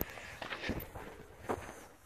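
Footsteps on a dry dirt trail: a few soft, spaced footfalls.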